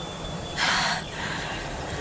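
A woman's sharp, breathy gasp, heard once about half a second in, over a low steady background hum.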